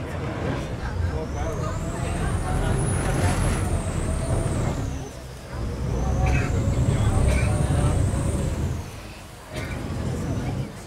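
Venice vaporetto's diesel engine surging twice while the water bus manoeuvres in to the stop, a deep rumble with a high whine that rises and falls with each surge, heard from inside the passenger cabin.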